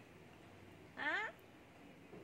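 A person's voice: one short vocal sound about a second in, rising in pitch.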